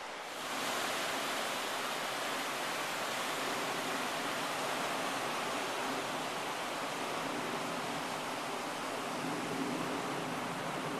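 Ocean surf breaking and washing up the beach as a steady rushing wash, growing louder about half a second in.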